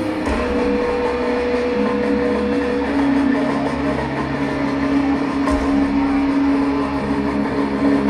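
Loud, amplified distorted electric guitar sustaining long held notes that change pitch a few times, over a low rumble of the arena PA.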